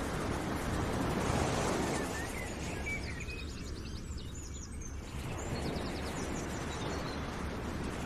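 Steady background noise like an outdoor ambience, with a few faint, high, short chirps in the middle.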